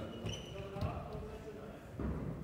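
A few dull thuds on a stage floor, the loudest a little before the middle, with a faint voice underneath.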